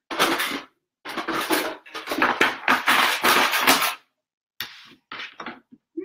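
Rustling and handling noise as fabric pieces are moved about on the sewing table: a short burst, then a longer stretch of about three seconds, then a few brief rustles near the end.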